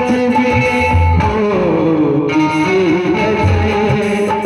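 Amplified music through stage loudspeakers: a melody over a low, recurring beat.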